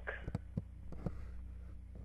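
A steady low electrical hum, with a few short soft clicks and knocks in the first second or so.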